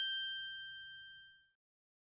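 Notification-bell sound effect for a subscribe animation: a single bell ding ringing out and fading away over about a second.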